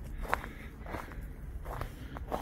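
Footsteps of a person walking on a gravel path at a steady pace, about two steps a second.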